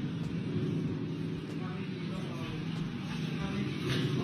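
Faint, indistinct voices over a steady low background rumble.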